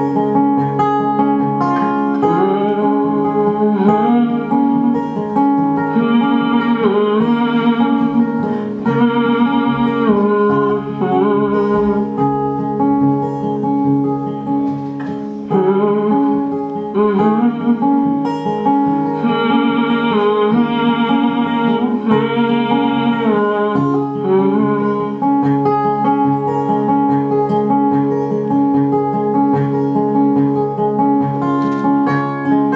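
Acoustic guitar played live, an instrumental passage of a folk song: low notes ringing steadily, with a higher melody coming and going on top.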